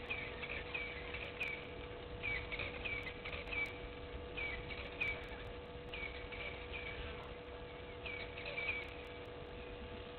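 Egyptian goose goslings peeping: short, high chirps, each dipping slightly in pitch, in quick runs of several with short pauses between, over a faint steady hum.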